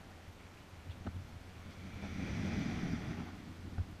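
Kayak paddle stroke through calm water: a soft swish that swells and fades about halfway through, with a few faint knocks around it.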